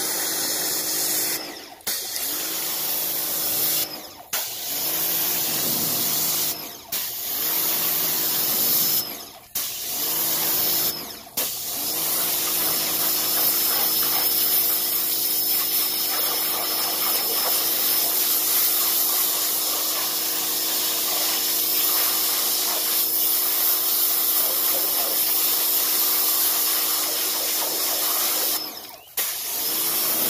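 Pressure washer running, its jet spraying onto algae-covered pond rocks and water: a steady hiss with a low hum under it. It cuts out briefly five times in the first twelve seconds and once near the end.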